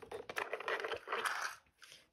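Plastic clicking and scraping as a toy die-cast car is pushed across and into a Hot Wheels Spider Strike plastic track set and its parts are handled. There is a run of small clicks and rubbing for most of the time, then a short pause.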